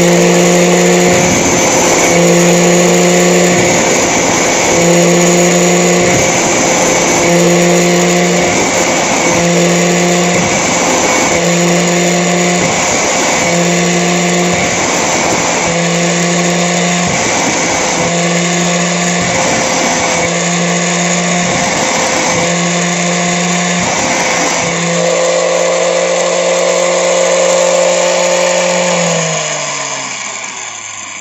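Angle grinder with a diamond sharpening disc running steadily while the carbide teeth of a hand-cutter saw blade are touched to it one after another, a gritty grinding contact about every second and a bit, each briefly loading the motor. The grinding stops about 25 seconds in, and near the end the grinder is switched off, its whine falling as it spins down.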